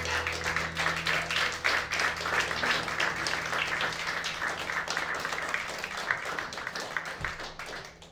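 Audience applauding at the end of a tune. The last low chord of the upright bass and guitars dies away under the first few seconds, and the clapping thins out near the end.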